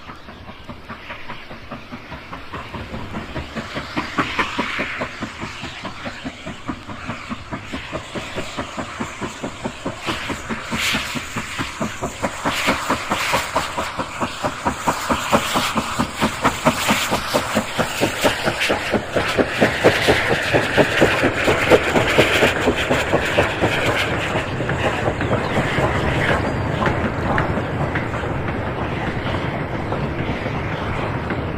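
Steam train running at speed, with a fast, regular beat of wheels and rail. It grows steadily louder to its loudest about two-thirds of the way through, then eases off slightly, as if the train is passing close by.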